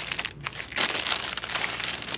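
Clear plastic packaging bag crinkling and rustling irregularly as a hand rummages in it and pulls parts out.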